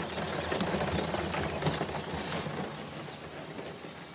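Styrofoam brooder-box lid scraping and squeaking against the box as it is slid shut, a steady rough rubbing that fades slightly towards the end.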